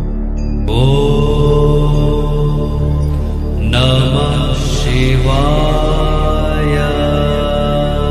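A voice chanting a Hindu mantra in two long, drawn-out phrases, the first beginning just under a second in and the second a little after the midpoint. Underneath is a steady low drone of meditation music.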